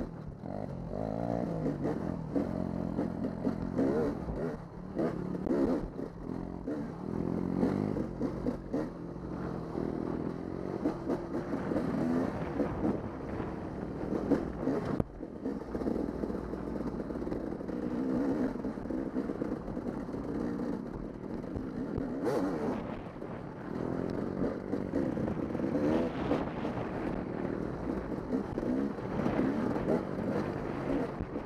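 Dirt bike engine running on a trail ride, its revs rising and falling over and over with the throttle, with a few brief knocks from the bike over bumps.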